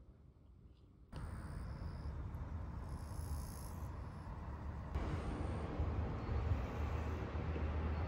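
Outdoor garden ambience starting about a second in: a low wind rumble on the microphone, with thin, steady, high insect calls over the first few seconds. It grows louder about halfway through.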